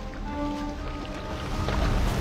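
Background music with held notes over the splashing of an osprey's wings beating on the water as it struggles to lift off with a trout.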